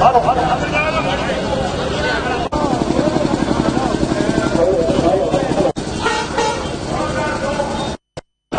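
Street rally crowd: loud overlapping voices, one man talking into a handheld microphone, with vehicle horns honking. The sound drops out briefly twice, about two and a half and five and a half seconds in.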